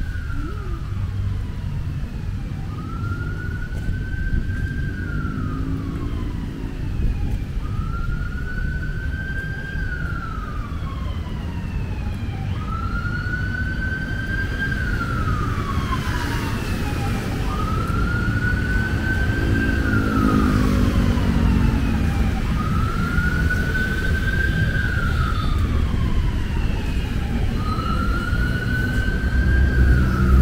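An emergency-vehicle siren wailing slowly: each cycle climbs gently, then falls away, repeating about every four seconds over a steady rumble of road traffic.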